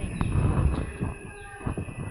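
Low rumbling noise with a few faint taps and squeaks, consistent with a marker writing on a whiteboard.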